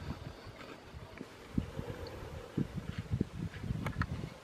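Wind buffeting the microphone in irregular gusts, with a brief faint click near the end.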